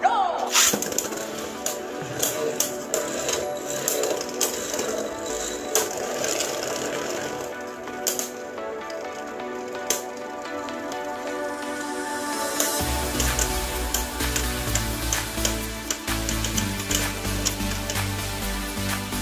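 Background music plays throughout, and a heavier bass beat comes in about 13 seconds in. Over it, Beyblade Burst spinning tops click and clatter as they strike each other and the plastic stadium wall.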